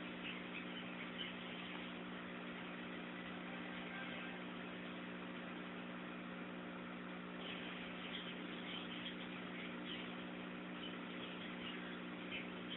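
Background room tone: a steady low hum with hiss, and a few faint soft ticks in the second half.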